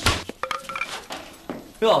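A sharp crash at the start followed by light clinking over the next second, like glass breaking: a film sound effect of a blow that leaves a hostage's head bloodied. A man shouts "ya!" near the end.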